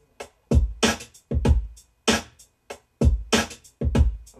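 Hip-hop drum-machine beat programmed in Reason 3.0 playing back with a shuffle on it: hard hits with deep bass under them, roughly every three-quarters of a second, with lighter hits between.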